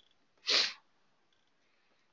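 A single short, breathy burst of air from the presenter about half a second in, with silence around it.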